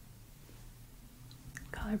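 Quiet room tone with a faint low hum, then a woman's voice begins near the end.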